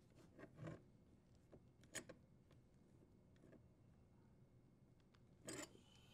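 Near silence, with a few faint short scrapes and clicks as a brass elbow fitting is threaded by hand onto a dishwasher's water inlet valve.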